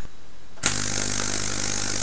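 A homemade GU-81 vacuum tube Tesla coil switching on with a click about half a second in. Then the steady buzzing hiss of its streamer discharge runs over a low mains hum.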